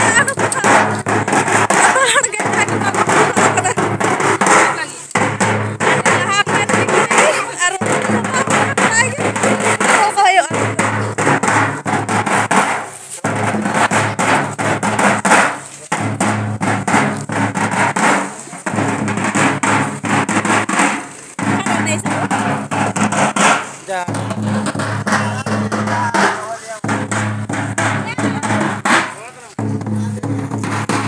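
Large stick-beaten drums playing a rhythm in repeating phrases with short breaks every two and a half to three seconds, amid many voices.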